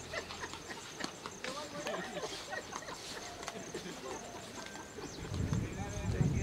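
Distant voices of players calling and chatting across the field, with scattered clicks. A low rumble comes in near the end.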